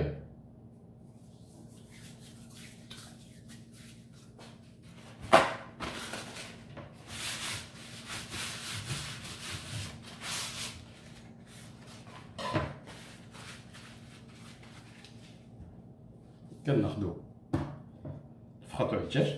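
Kitchen handling sounds: a sharp knock about five seconds in, then several seconds of paper towel rustling as it is crumpled and wiped, and another knock later.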